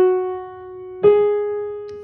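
Piano playing a scale slowly, one note at a time: an F-sharp rings out and fades, then a G-sharp is struck about a second in and held.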